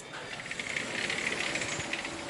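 A short click, then a steady rushing hiss of outdoor air and wind with a light rattle as the stateroom's balcony door is opened.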